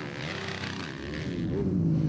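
Supermoto race motorcycle engines: one bike's engine note falls in pitch in the first half second, then another bike's engine grows louder and steadier from about a second and a half in.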